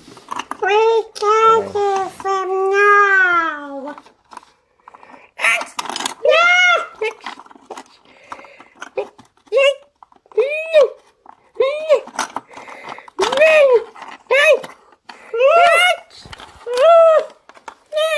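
A child's voice making high-pitched character noises for toy figures: a long falling wail, then a string of short, sharp squeaky calls.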